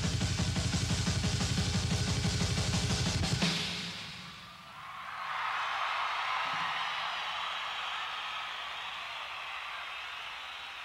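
Rock drum kit solo: a fast, even run of bass drum and drum strokes, ending about three and a half seconds in with a final hit. An audience then cheers and applauds steadily.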